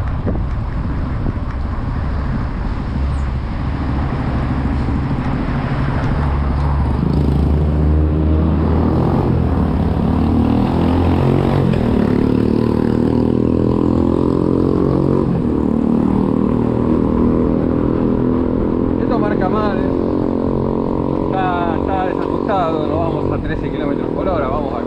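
Wind buffeting the microphone of a handlebar-mounted camera on a bicycle picking up speed along a city street. A steady engine drone from nearby traffic comes in about a third of the way through and carries on.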